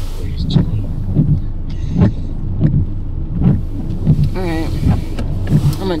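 Inside a car's cabin: the engine's low, steady idle hum, with a soft tick repeating a little faster than once a second.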